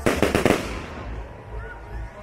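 Aerial firework shell bursting into crackling stars: a quick run of sharp pops over about half a second, then dying away.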